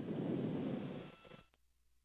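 Open radio-channel hiss from the launch commentary loop after the commentator stops talking. It fades and cuts off with a click about one and a half seconds in, like a mic being unkeyed, leaving near silence.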